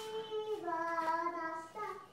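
A high voice singing long held notes, dropping to a lower note about halfway through and rising again near the end.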